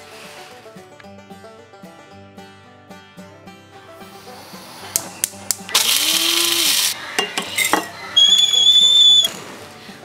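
Background music, then a small electric countertop appliance switched on by a hand pressing its lid. It gives about a second of loud whirring, a couple of clicks, then about a second of a high, steady whine.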